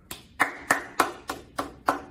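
One person clapping their hands, sharp single claps at about three a second, starting just under half a second in.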